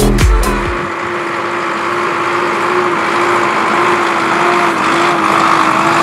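Electronic dance music cuts off about a second in, leaving a Zetor Forterra 140 HSX tractor's engine running steadily with an even, slightly wavering drone.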